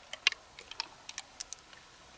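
Small hard pearls clicking against each other in a cupped hand and on a mussel shell as they are picked out and handled: about eight quick, irregular clicks, the loudest about a quarter second in.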